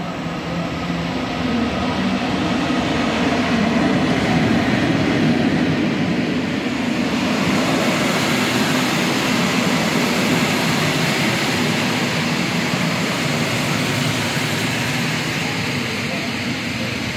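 MÁV class V43 "Szili" electric locomotive arriving with an InterCity train and passing close by, its hum growing louder over the first few seconds. From about seven seconds in, the coaches roll past with a steady noise of wheels on the rails.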